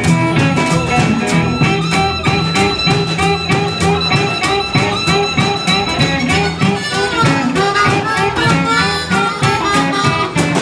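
Live blues band playing with no singing: harmonica cupped against a microphone, upright double bass, snare drum and electric guitar, over a steady beat.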